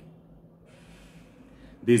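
A man drawing a faint breath in a pause between sentences, then starting to speak again near the end.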